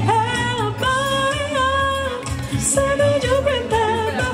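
A woman singing live into a handheld microphone, holding long notes over a steady bass accompaniment.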